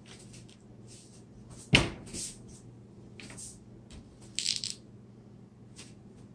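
Handling noise: a sharp knock a little under two seconds in, then a lighter click, and a brief rattle of quick clicks about four and a half seconds in, over a low steady hum.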